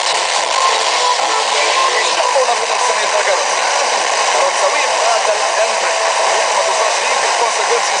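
Portable radio receiving a weak, distant FM broadcast on 88.7 MHz by sporadic-E skip: a steady wash of hiss with a faint voice wavering underneath.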